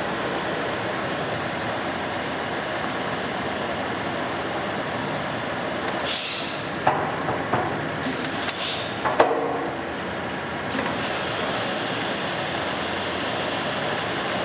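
Leblond heavy-duty engine lathe running with its spindle turning slowly at 8.5 RPM, a steady mechanical whir from its motor and headstock gearing. About halfway through comes a cluster of clicks and clanks as the spindle-speed levers are shifted, then the machine runs on steadily.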